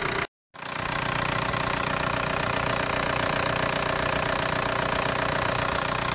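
VW ALH 1.9 TDI four-cylinder diesel idling steadily, with the sound cutting out briefly just after the start.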